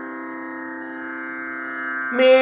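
A steady sruti drone, the pitch reference for a Carnatic vocal lesson, sounding alone between sung phrases as an unchanging chord of held tones.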